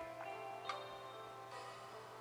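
Quiet instrumental gap in a song: three softly plucked guitar notes, about one every three-quarters of a second, each left to ring, over a faint steady hum.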